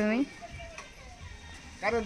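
Speech only: a high voice calling out at the start and again just before the end, with a quieter gap between.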